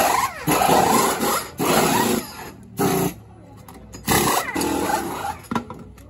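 Pneumatic wheel guns spinning the wheel nuts off and on during a race-car tyre change, in about five short bursts, each up to about a second and a half long.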